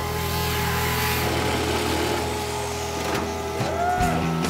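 A handheld power tool cutting into the sheet-steel rear wheel well of a 1963 Chevrolet Nova. Its cutting noise fades in the second half, with background music underneath.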